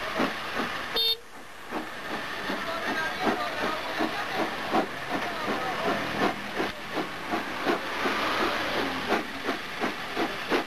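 Steam locomotive working under power: a regular chuffing exhaust beat of about two and a half beats a second over a steady hiss of steam. The sound briefly cuts out about a second in.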